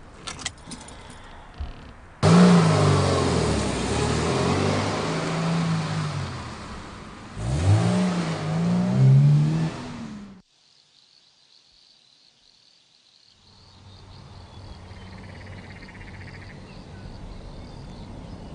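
A car engine revving hard, its pitch repeatedly rising and falling, starting suddenly a couple of seconds in and surging again past the middle. It cuts off abruptly, followed by a few seconds of near silence and then a faint steady background with a thin high tone.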